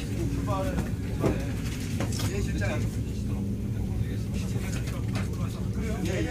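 Steady low rumble of an SRT high-speed train (KTX-Sancheon type) heard from inside a passenger car as it rolls along, with people's voices talking over it.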